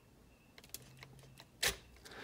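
A few light clicks as a bent metal tool presses the small mode button on a Radiolink R7FG receiver in quick succession, the loudest click near the end. The presses switch the receiver's gyro mode from mode three to mode one.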